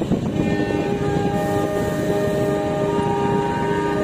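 Diesel locomotive air horn sounding a long, steady multi-note blast, the departure signal of a passenger train.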